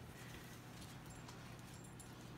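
Near silence: quiet kitchen room tone with a steady low hum and a few faint soft ticks.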